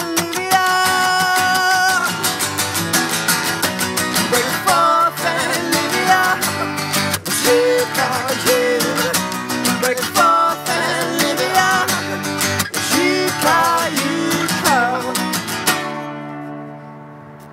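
Two acoustic guitars strummed, with singing over them: long held sung notes that bend in pitch. The strumming stops abruptly right at the end.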